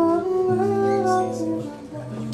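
A jazz quartet playing live: electric guitar, keyboards, electric bass and drum kit. Sustained melody notes move over long held bass notes, with light cymbal above; the bass changes note about half a second in and again near the end.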